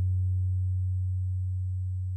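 A single low bass note of the backing music, held steady and slowly fading.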